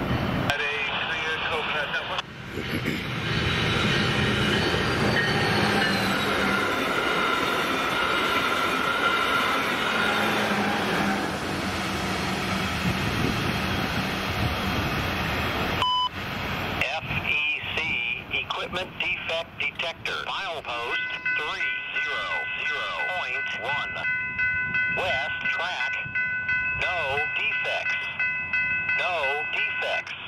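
A train passing a grade crossing, with loud, dense running and wheel noise. It stops abruptly about halfway through at a cut, and quieter, broken sounds follow, with voice chatter that could be over a scanner radio and steady high tones in the last part.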